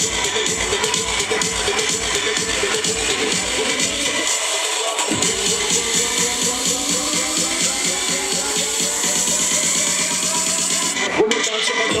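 Loud electro/dubstep dance music played live over a club sound system, with a steady heavy beat. The bass drops out briefly about four seconds in, a rising sweep builds through the second half, and the bass cuts again near the end under a rapidly repeated chopped vocal.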